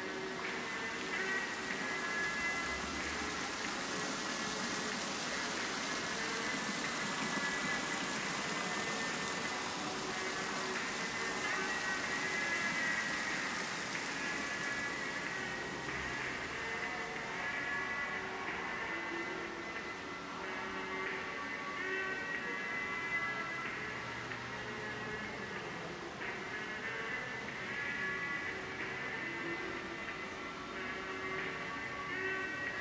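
Slow ambient background music with long held notes, over a steady hiss of running fountain water that fades out about halfway through.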